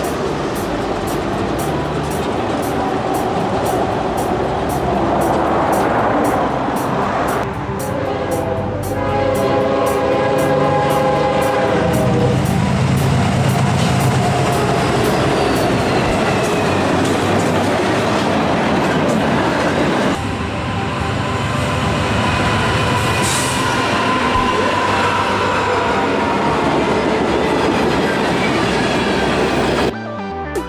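Diesel freight trains passing close by, cars rumbling and clattering over the rails, with a locomotive horn sounding for a few seconds about eight seconds in.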